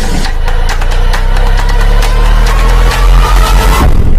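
Loud, edited outro sound effect: a deep, engine-like rumble with fast regular clicking, and a rising whine building near the end.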